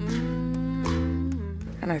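A song: a woman's voice holding a long note on the word "song", over plucked acoustic guitar and low bass notes. The music fades out near the end as speech begins.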